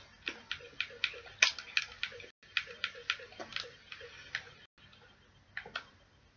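Wet smacking clicks of a mouth chewing chewy sweets, irregular, about three a second. They thin out after about four and a half seconds, with two more near the end.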